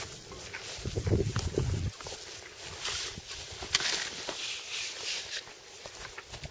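Footsteps and rustling on dry farm ground, a run of irregular crunching steps, with a brief low rumble about a second in.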